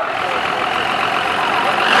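Scammell six-wheeled diesel lorry's engine running steadily as it drives in, growing a little louder near the end.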